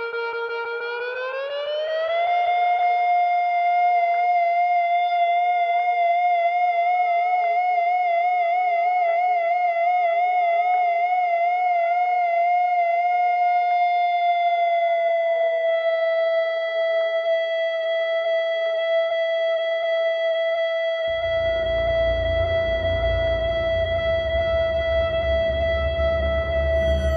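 Slow, sustained contemporary chamber music for violins, soprano saxophone and EBow guitar. A long held note slides upward in the first couple of seconds, then is held, swelling into a wide vibrato for a while. About 21 seconds in, a low, rough drone comes in beneath it.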